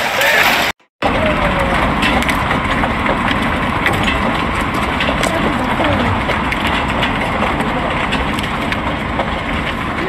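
Heavy hail falling: a dense steady hiss of hailstones pelting down, with many sharp ticks of stones striking a concrete balcony floor and metal railing. The sound breaks off briefly just under a second in and resumes.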